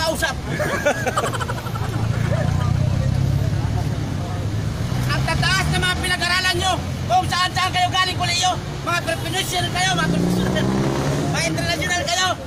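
A man's voice and crowd chatter over a motor vehicle's engine running with a steady low rumble, which rises in pitch shortly before the end.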